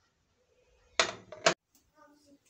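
A plate set down on a kitchen counter: a short clatter about a second in, then a second sharp knock half a second later.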